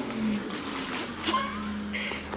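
Vinyl of a deflated inflatable pool float crinkling and rustling as it is handled, with a few sharp crackles of the plastic.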